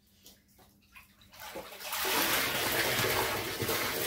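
Dye water streaming and splashing back into the dye pan as a soaked, freshly dyed skein of sock yarn is lifted out of it. A few small knocks first, then the running water starts about a second and a half in and stays loud.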